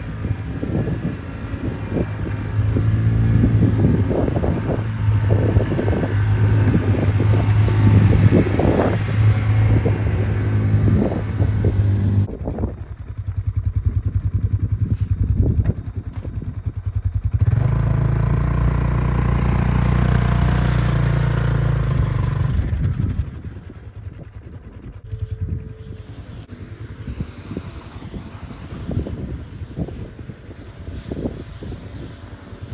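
Polaris RZR side-by-side buggy engines running: a steady idle for about the first twelve seconds, then after a short lull an engine comes up again about seventeen seconds in as a buggy is driven off, dropping away after about twenty-three seconds.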